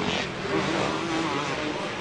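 Supercross dirt-bike engines racing on the track, their pitch rising and falling as the riders work the throttle.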